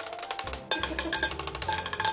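A roulette ball clattering and bouncing across the spinning wheel's metal frets and pockets, a rapid run of clicks as it drops before settling, over background music.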